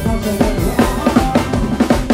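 Live band music with the drum kit to the fore: a busy, driving beat of bass drum and snare strikes over sustained keyboard or instrument notes.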